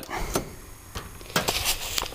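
A few light knocks and clicks of hands handling the wooden TV cabinet and chassis, spaced out over a quiet background.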